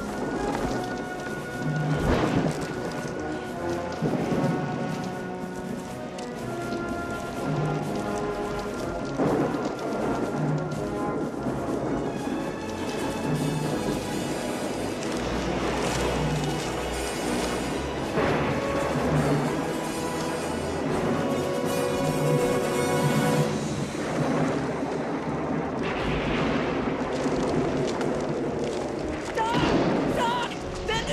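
Orchestral film score playing over storm sound effects: wind, rain and rumbles of thunder.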